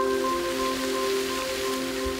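Water spraying out under pressure, a steady hiss, over the held tones of ambient background music.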